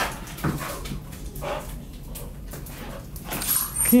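A dog whining faintly while it plays with tennis balls, with a few light knocks on the floor.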